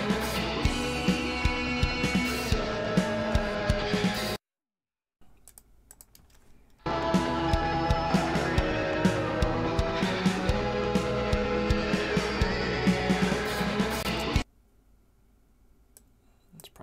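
Playback of a drum cover recording: live drums with regular hits over a backing track with guitar. It cuts off suddenly about four seconds in, a few faint computer keyboard clicks follow, then the same music starts again about seven seconds in and cuts off again near the end.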